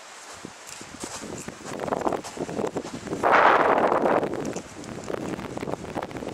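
Footsteps crunching in snow, with rustling throughout. About three seconds in there is a louder rushing noise for about a second.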